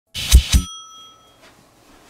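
A small bell struck twice in quick succession, then ringing on with a clear tone that fades out within about a second.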